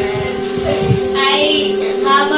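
Music: a song with a high singing voice over a steady held drone note, the voice clearest from about a second in.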